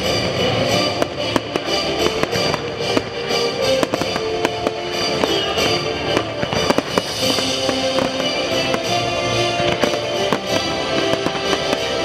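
Aerial fireworks shells bursting in a rapid, dense run of sharp bangs, the loudest a little past the middle, over loud orchestral show music from the speakers.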